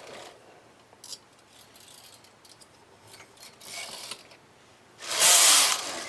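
Lace carriage of a Brother KH970 knitting machine pushed along the metal needle bed, the needles rattling under it: a few small clicks about a second in, a short fainter pass near four seconds, then a louder, longer pass about five seconds in.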